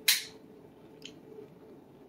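A brief hissing mouth sound as a man puts food to his mouth, then quiet with a faint steady hum and a faint tick about a second in.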